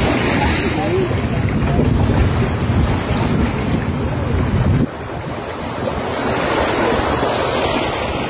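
Wind buffeting the phone's microphone over sea water lapping and washing. The low rumble drops suddenly about five seconds in.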